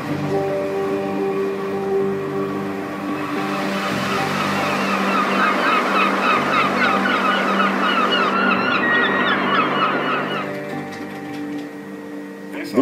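A flock of birds calling many times over, starting about three seconds in and stopping shortly before the end, heard over background music with long held notes.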